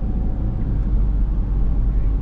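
Moving car heard from inside its cabin: a steady low rumble of engine and road noise.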